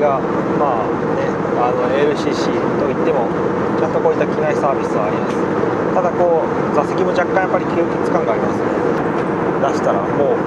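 Steady in-flight cabin noise of an Airbus A320 airliner, a constant rushing hum with a steady drone, under indistinct talk from nearby voices. A few light clicks around two seconds in.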